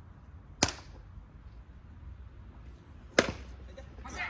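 Two sharp cracks about two and a half seconds apart over faint outdoor background. The second and louder one, with a brief ringing tail, is a bat hitting a baseball.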